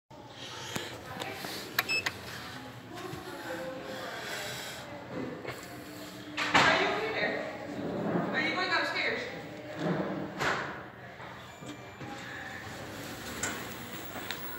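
Indistinct voices talking, with a couple of sharp clicks just before two seconds in and a louder noisy burst about six and a half seconds in.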